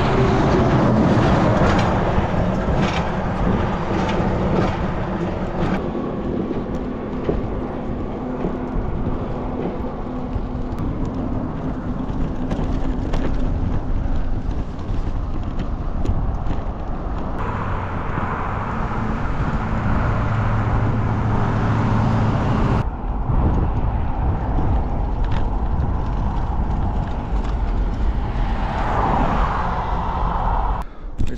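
Wind rushing over the microphone and road noise while riding a bicycle along a highway, with cars and trucks passing and a steady engine hum at times. The sound changes abruptly a few times.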